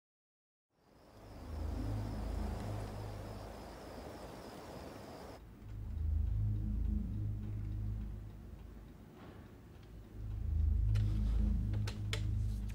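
After about a second of silence, a low, rumbling ambient drone of film score fades in and swells twice, with a faint high steady whine over it for the first few seconds.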